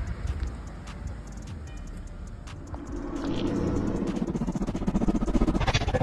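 A cruiser motorcycle's engine running at a low idle, a rough low rumble. From about halfway, music swells in and grows louder to the end.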